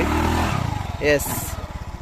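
A gearless scooter's small engine running under throttle, a steady low drone with a slight waver, with a short spoken word about a second in.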